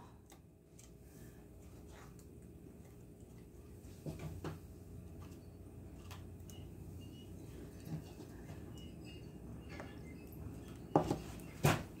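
Quiet handling of a plastic water bottle as an onion half is pressed down and levelled in its upturned top: a few soft clicks and taps, then two sharper knocks near the end.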